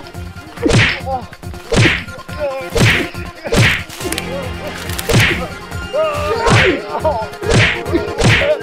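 Dubbed fight-scene punch sound effects: a swishing whack roughly once a second, seven blows in all, with short groans after several of them.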